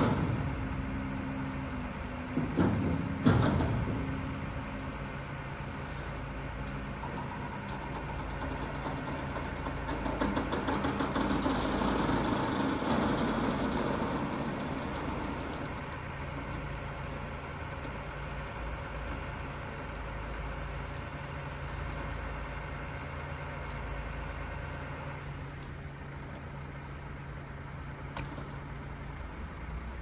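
Heavy truck engine running steadily at low revs, with a few loud knocks in the first few seconds and a swell of louder engine noise around the middle.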